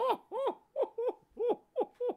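A man laughing in a high falsetto: a run of short yelping syllables, each rising and falling in pitch, about three a second.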